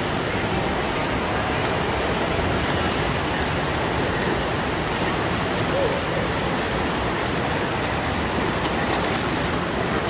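Backstroke swimmers splashing through a race in a pool, heard as a steady, even wash of water noise.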